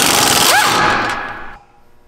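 Pneumatic impact wrench hammering on the rear shock's mounting bolt to loosen it, running for about a second and a half and then stopping.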